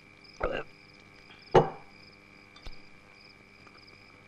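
A man gulping down a drink, with a few short swallowing sounds, the loudest about a second and a half in. Behind it runs a steady high chirring of night insects.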